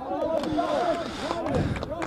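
Several voices calling and shouting over one another across an outdoor football pitch, with no single close speaker.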